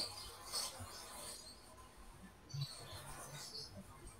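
Faint, broken-up video-call audio: scattered short chirps and crackles with no clear speech, as the call's sound drops out.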